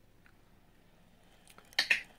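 An automatic treat feeder starting a timed dispense: a brief burst of clicking and rattling in its plastic bowl near the end.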